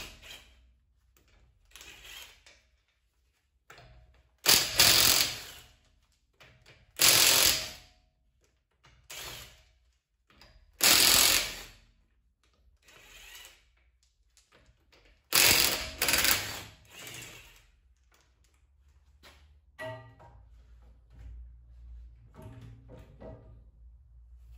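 Cordless impact wrench loosening the 17 mm wheel bolts on a BMW 1 Series, running in short bursts of about a second each, with quiet gaps between; five bursts are loud.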